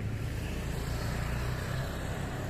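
Street traffic: a steady low engine rumble from passing vehicles, with a motorbike going by close.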